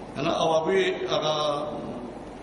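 A man's voice chanting a line of Pashto verse in a drawn-out, melodic recitation, starting just after the beginning and trailing off near the end.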